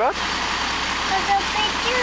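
Garbage truck's diesel engine running steadily, a low, even rumble.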